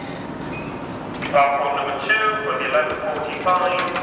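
Low, steady background noise, then from just over a second in a voice speaking.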